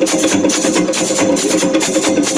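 Loud live music with a fast hand-drum rhythm over steady held tones.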